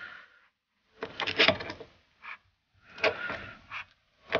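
Two steel pry bars levering a piston out of a Brembo brake caliper's bore: metal scraping and creaking in two bouts of about a second each.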